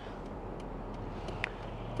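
A stopped car's engine idling, a low steady hum heard inside the cabin, with one short tick about one and a half seconds in.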